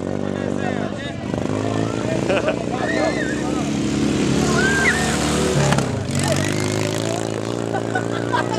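A motorcycle engine running steadily, its pitch shifting a few times, with people's voices and laughter over it.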